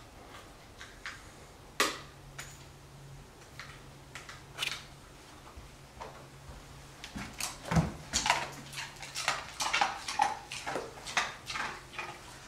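Ice cubes clicking and crunching as they are handed out to and chewed by dogs: a few scattered clicks at first, then a quick run of them over the last few seconds, with one dull thump in the middle of it.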